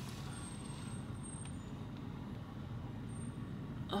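Car engine running at low speed, heard from inside the cabin as the car reverses slowly out of a garage: a steady low rumble.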